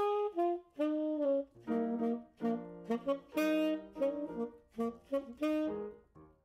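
Tenor saxophone playing a 12-bar blues phrase in short, separate notes, with jazz piano accompaniment underneath, as a sax and piano duet.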